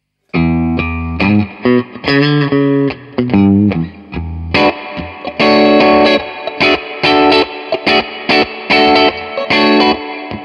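Harley Benton MS-60 VW electric guitar played through an amp with its neck and bridge single-coil pickups on together: low single-note lines first, then louder, fuller chords from about halfway, with short breaks between phrases.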